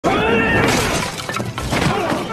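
Martial-arts film fight sound: a loud crash right at the start, then a quick run of sharp hits, with shouting voices.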